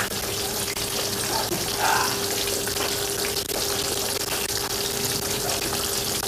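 Two whole vinegar-marinated milkfish (daing na bangus) frying in hot canola oil in a wok, giving a steady sizzle.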